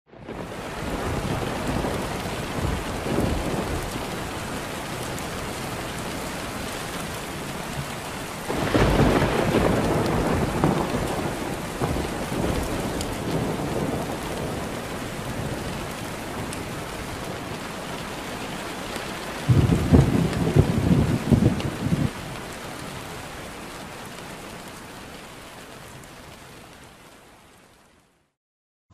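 Steady rain falling, with two loud rolls of thunder, one about eight seconds in and one about twenty seconds in. The rain fades away near the end.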